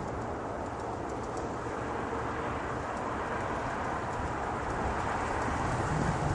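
Approaching diesel freight locomotives running on the main line, a steady rumble that grows louder toward the end.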